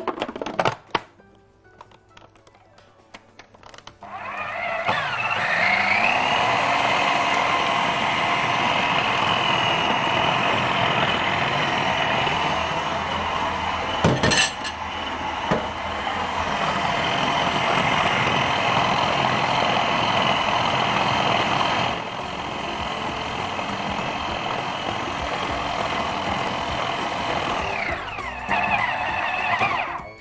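Electric food processor starting about four seconds in, its motor whine rising to speed, then running steadily as it purées a minced-meat mixture into a smooth paste, with one sharp knock about halfway through. It winds down near the end.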